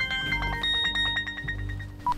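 Mobile phone ringtone: a quick melody of high, bell-like notes over a low held tone, breaking off near the end as the call is answered.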